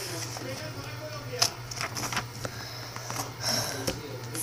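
A creased sheet of paper being cut in half by hand: paper rustling with a few sharp clicks and short hissy scrapes, over a steady low hum.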